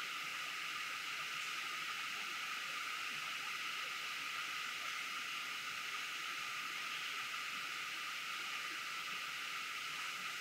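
Steady, even hiss with nothing else happening: the background noise of the room and sound system during a silent pause.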